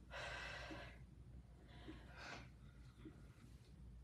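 A woman breathing out hard from exertion, faint: one long exhale at the start and a shorter one a little after two seconds in, over low room hum.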